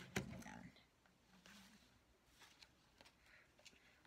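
Near silence: quiet room tone with a few faint soft clicks and a brief faint murmur.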